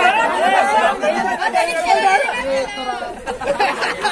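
A group of young men talking and calling out over one another in lively, overlapping chatter.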